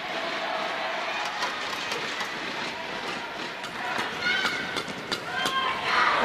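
Badminton doubles rally: a quick series of sharp racket strikes on the shuttlecock, with shoes squeaking on the court floor about four to five seconds in, over the steady hum of the arena crowd.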